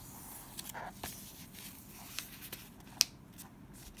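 A sheet of paper being folded and creased by hand on a tabletop: soft rustling broken by short crisp ticks, the sharpest about three seconds in.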